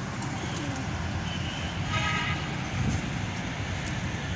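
Domestic pigeons cooing low around the loft over a steady low background rumble, with a brief higher-pitched tone about two seconds in.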